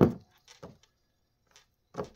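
A lidded glass jar of water set down on a wooden tabletop with one sharp knock, followed by a few faint small clicks.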